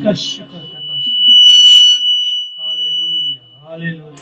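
Microphone feedback from the PA: a single high, steady whistle that swells to loud about a second and a half in, then fades and stops near the three-second mark. A man's voice is heard at the start and again near the end.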